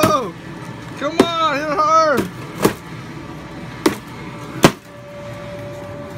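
A stick whacking a cardboard, duct-tape-covered piñata, about six strikes at irregular intervals, the loudest a little before the five-second mark.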